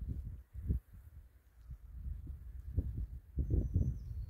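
Irregular low rumbling thumps of wind buffeting and handling noise on a handheld phone microphone, busier near the end.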